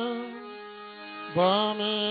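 A voice chanting a Sanskrit invocation in long held, slowly bending notes over a steady low drone. One note fades out within the first half second, and a new phrase starts loudly about a second and a half in.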